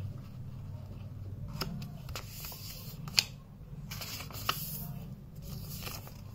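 A sheet of paper rustling and being creased as it is folded corner to corner into a triangle, with a few sharp crinkles, the loudest about three seconds in. A low steady hum runs underneath.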